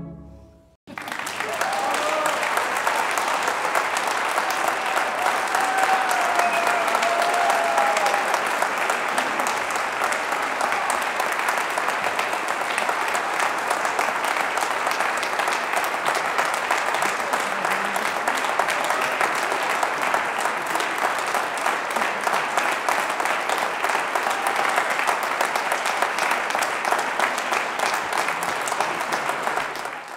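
Audience applauding steadily, starting suddenly about a second in.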